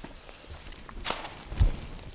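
Footsteps and handling knocks on a TV studio floor: a sharp knock about a second in, then a louder dull low thump.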